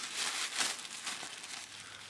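Black wrapping crinkling in an uneven run of rustles as it is pulled by hand off a tightly wrapped skein of yarn.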